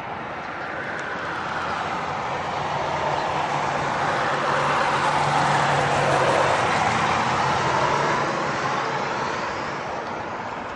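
A vehicle passing by: its broad rushing noise, with a faint low hum under it, swells to a peak about six seconds in and then fades away.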